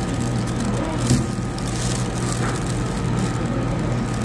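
Steady low background hum, like distant traffic, with faint far-off voices; a brief louder rustle about a second in.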